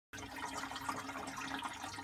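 Goldfish aquarium's internal filter running, its outflow churning the water surface into a steady bubbling, trickling sound, with a faint steady hum underneath.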